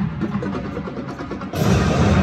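Marching band playing in a large indoor dome: a softer stretch carried by quick percussion strokes, then the full band comes in loudly about a second and a half in.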